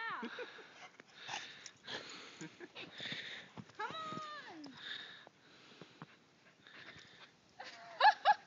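Heavy breathing in short bursts about every second or so, with a drawn-out falling whine about four seconds in.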